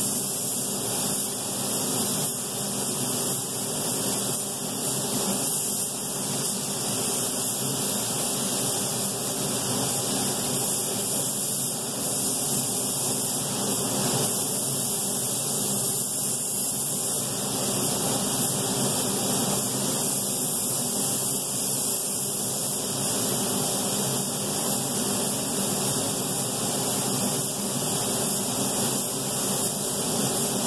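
Steady, unbroken rushing hiss of a paint booth's exhaust fan running.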